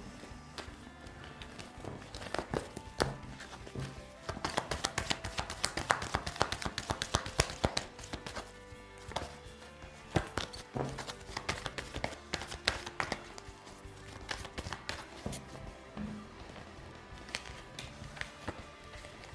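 A deck of tarot cards being shuffled and handled by hand, quick runs of card clicks and flicks that are densest about four to eight seconds in, then cards laid out on the table. Quiet background music plays underneath.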